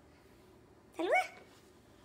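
A small boy's single short yelp about a second in, rising sharply in pitch like a puppy's yip, in an otherwise quiet room.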